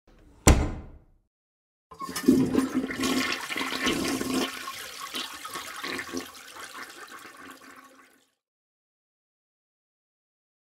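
A sharp click, then a toilet flushing: a rush of water that is loudest at first and dies away over about six seconds.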